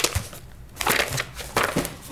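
Sheets of paper being shuffled and leafed through close to a desk microphone, in three rustling bursts: one at the start, one about a second in and one near the end.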